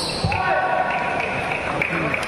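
Badminton rally ending in a large hall: sharp hits and a thud of feet on the court right at the start, then a drawn-out shout with a held pitch lasting well over a second.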